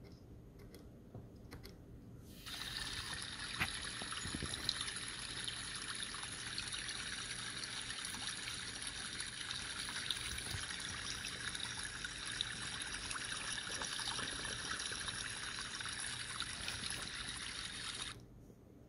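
Small loudspeaker driven by an ESP32 sound board playing back a recording of steadily trickling water. It starts suddenly about two and a half seconds in and stops suddenly at the end.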